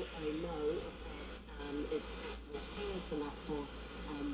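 Cassette tape playback through the Crosley CT100B's small speaker of a recorded Radio New Zealand broadcast: a faint, thin-sounding announcer's voice over steady tape and radio hiss.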